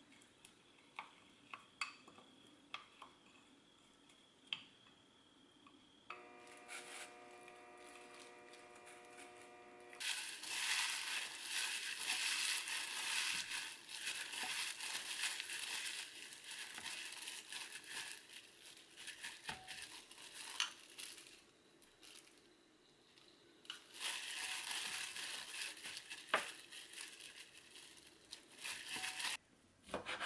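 Dry roasted seaweed (gim) crackling and crinkling as a hand in a plastic glove crushes and tosses it in a glass bowl, loud and dense, with a short lull in the middle. Before that come light clicks of a wooden spoon stirring sauce in a small glass bowl, and a steady hum for a few seconds.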